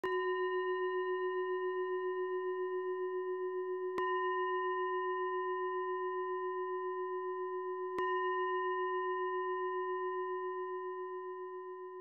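A meditation singing bowl struck three times, about four seconds apart. Each strike rings on with a slightly wavering, pulsing tone, and the ringing slowly fades after the third.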